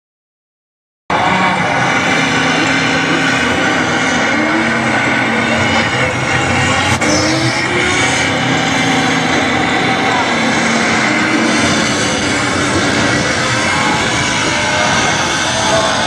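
Loud motorsport engine noise with voices mixed in, starting suddenly about a second in after silence, the engine pitch rising and falling.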